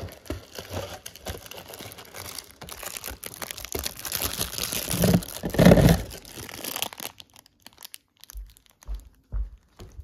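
Cardboard toaster-pastry carton and its foil pouch crinkling and rustling as they are handled, loudest about five to six seconds in. After about seven seconds the crinkling stops, leaving a few soft knocks.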